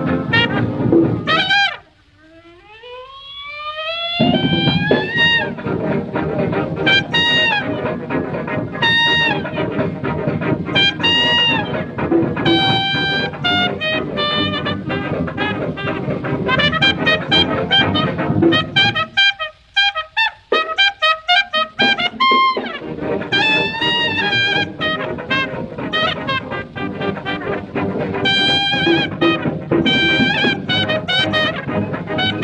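Early jazz band record with a trumpet playing the lead over the band. About two seconds in the sound drops briefly and the trumpet climbs in a long rising run. Around twenty seconds in the band nearly falls away for a couple of seconds and only a few short notes sound.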